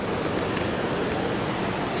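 Sea waves breaking on the shore with wind, heard as a steady, even wash of noise.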